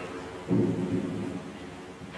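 A low, muffled thump and rumble about half a second in, dying away over about a second, as the missal is shifted on the altar close to the altar microphone.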